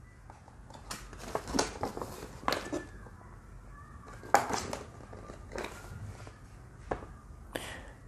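Paper instruction leaflet being unfolded and handled: irregular crisp rustles and crackles of paper, the loudest about four and a half seconds in.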